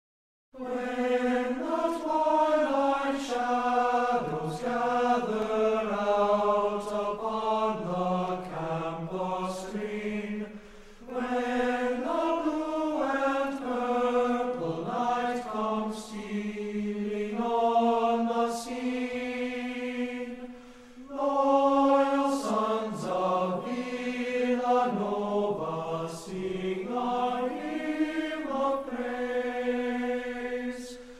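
Background music of sung chant: voices holding long, sustained notes in slow phrases. It starts about half a second in and pauses briefly about ten and twenty-one seconds in.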